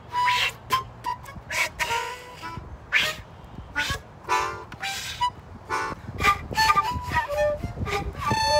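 Free improvisation for concert flute and melodica: sparse, jagged phrases of breathy, noisy air blasts and short pitched notes. In the last couple of seconds the notes become longer and waver in pitch.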